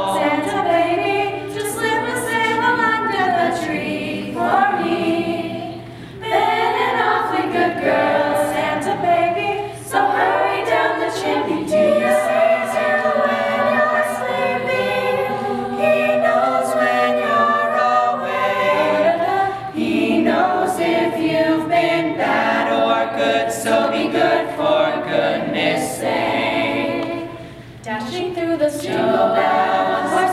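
Mixed high school choir singing a Christmas medley in several parts, with a few short breaks between phrases.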